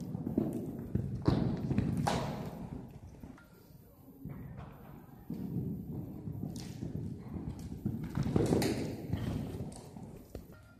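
Hoofbeats of a horse cantering on the dirt footing of an indoor riding arena, with several heavier thuds, the loudest about a second in, two seconds in and near the end.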